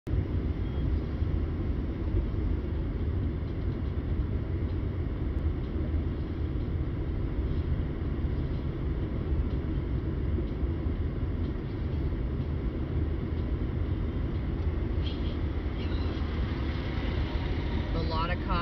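Steady low rumble of a car's road and engine noise heard from inside the cabin while driving slowly along a highway.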